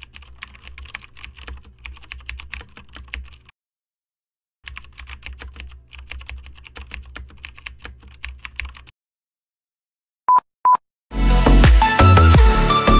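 Computer keyboard typing sound effect: rapid key clicks over a low hum in two runs of about three and four seconds, with a pause between. Two short beeps follow, and music starts near the end.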